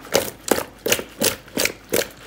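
Parboiled potato wedges coated in oil and spices tossed in a bowl, sliding and knocking against its sides in an even rhythm of about three strokes a second.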